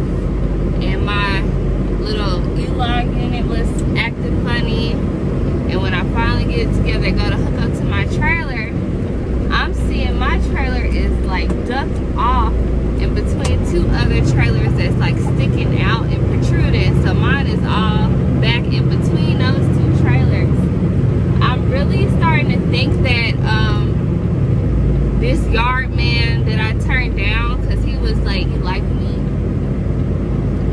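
Steady low rumble of a semi-truck's idling diesel engine heard inside the cab, under a woman's talking; the rumble grows stronger from about halfway through for some ten seconds.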